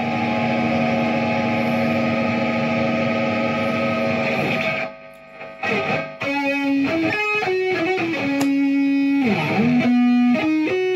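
Electric guitar playing a lead line. It holds one long note, pauses briefly about halfway, then plays a melody of single notes, with the pitch sweeping down and back up near the end.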